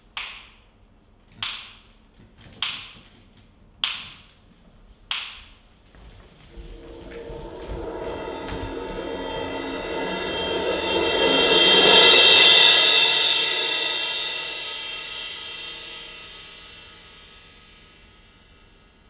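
Dramatic stage percussion: five sharp, ringing strikes about a second and a quarter apart, then a rolled cymbal swell that builds to a loud peak about twelve seconds in and slowly dies away.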